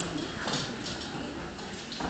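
Scattered light knocks and footsteps as people move about a stage, over a low room murmur.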